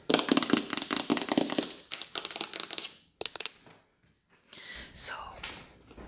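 Fingernails tapping and scratching rapidly on Christmas decorations: a dense run of quick clicks and scrapes for about three seconds, a short flurry after, a brief pause, then softer scratching near the end.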